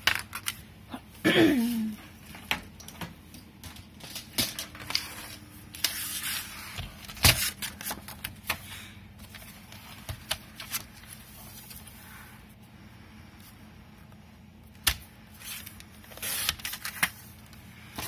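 Kraft cardstock and small craft tools being handled on a cutting mat and a plastic paper trimmer: scattered light clicks, taps and paper rustling, with one sharper knock about seven seconds in.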